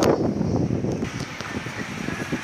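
Outdoor street noise with wind buffeting the microphone, an uneven rumble that is loudest at the very start.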